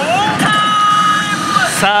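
Smart pachislot machine's electronic sound effects over the steady din of a pachinko hall: a short gliding sound, then a held electronic tone lasting about a second as the reels stop and a cut-in effect plays.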